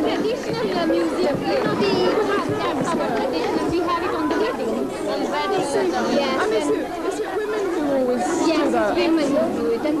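A group of women chattering, many voices talking over one another at once so that no single speaker stands out.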